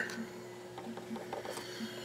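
Faint small clicks and rubbing of wires and push-on terminals being handled inside an air-conditioner condenser's control panel, over a steady low hum.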